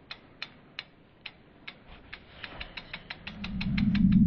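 Logo-animation sound effects: a run of sharp mechanical ticks, like a ratchet being wound, that speed up. A low rumble swells in during the last second as the logo comes together.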